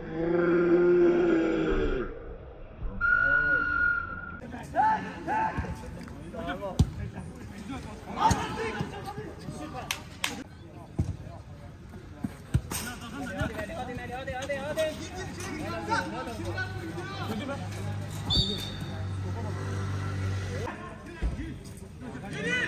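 Five-a-side football on an artificial-turf pitch: the ball is kicked again and again with sharp thuds, among scattered distant shouts from players. It opens with a couple of seconds of a voice and a short steady tone.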